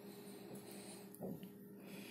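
Very quiet recording-room tone with a faint steady low hum, and a brief soft sound about a second in, likely the narrator's breath.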